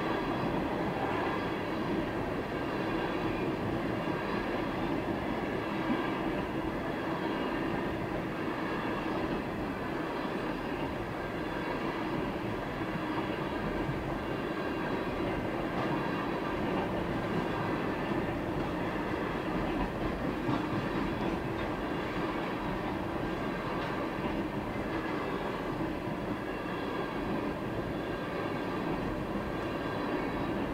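A freight train of empty ethanol tank cars rolling steadily past a grade crossing, its wheels running on the rails in an even, unbroken rumble.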